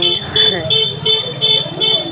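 Vehicle horn giving a rapid series of short, high electronic beeps, about three a second, in a crowded street market.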